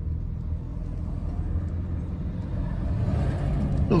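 Steady low rumble of a Renault Master pickup crawling along in slow traffic, heard from inside the cab, growing slightly louder near the end.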